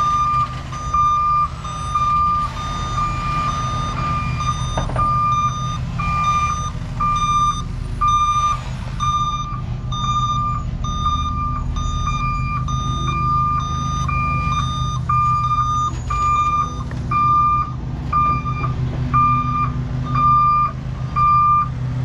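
Tri-axle dump truck reversing: its backup alarm beeps about once a second over the steady low rumble of its diesel engine.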